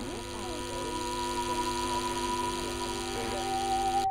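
Sustained musical drone from the soundtrack: several steady held tones with a few pitches sliding down in the first second or so, slowly swelling in loudness.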